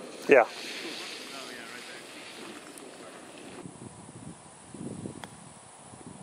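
Quiet outdoor background with light wind on the microphone and faint far-off voices, then, about five seconds in, a single sharp click of a putter striking a golf ball.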